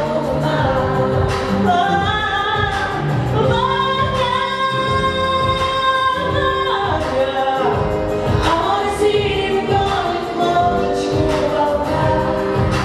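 A woman singing a pop song into a microphone over a backing track with a steady beat, holding one long note for about three seconds near the middle.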